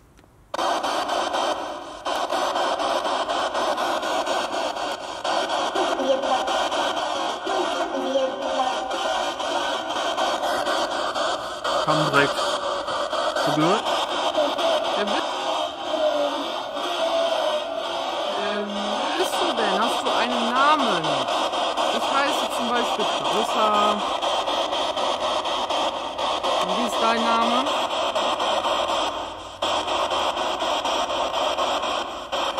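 Homemade spirit box putting out a steady hiss of radio static, with short snatches of voices and music breaking through from about twelve seconds in. It starts abruptly and cuts off just before the end.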